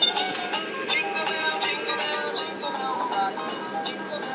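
Animated plush Christmas snowman toy playing its electronic song, a steady run of quick, short notes.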